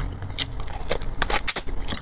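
A person chewing fried chicken close to a clip-on microphone: an irregular run of short sharp mouth clicks and smacks, with fingers tearing meat from a chicken piece.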